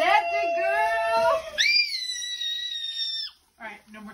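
Excited high-pitched squealing from young women. A held squeal over lower talk is followed, about a second and a half in, by a very shrill, steady squeal that lasts nearly two seconds and cuts off.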